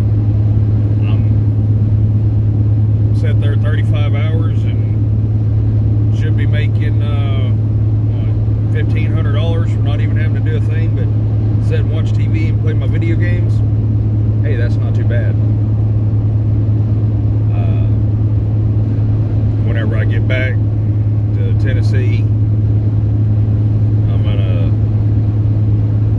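Steady low drone of a Dodge pickup's engine and road noise inside the cab while driving, with short bits of speech coming and going over it.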